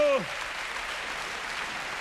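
Theatre audience applauding steadily, with a man's voice briefly ending a word at the very start.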